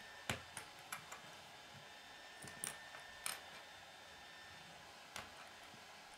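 Small plastic Lego pieces clicking and snapping as they are fitted together by hand, with light taps of plastic on a wooden tabletop. The clicks are faint and scattered: several in the first second, a few more around the middle and one near the end.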